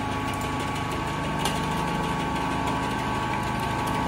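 Six-wheel automatic bottle capping machine and its conveyor running: a steady motor hum with a few constant tones, and one faint click about a second and a half in.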